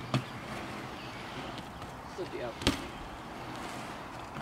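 BMX bike rolling across a concrete bowl, its tyres making a steady rolling noise. There is a sharp clack just after the start as the bike drops in off the coping, and a second, louder clack about two-thirds of the way through.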